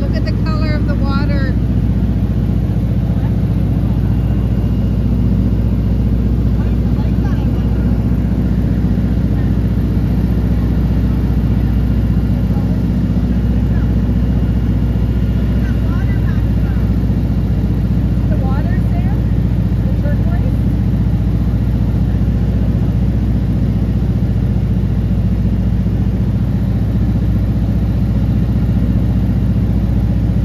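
Steady, unchanging drone of a light high-wing airplane's engine and propeller in cruise, heard from inside the cabin. Faint voices come through briefly under it near the start and again around the middle.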